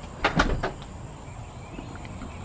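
Three or four sharp knocks in quick succession a quarter of a second in, over a faint, steady, high-pitched drone of insects.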